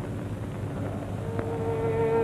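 Hissing, humming old film soundtrack, then a little over a second in a single held note of background music comes in and sustains.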